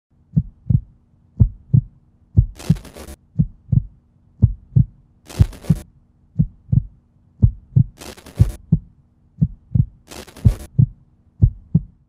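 Heartbeat sound effect: paired low thumps about once a second, steady throughout. Four short hissing swishes are layered in between, and a faint steady hum runs underneath.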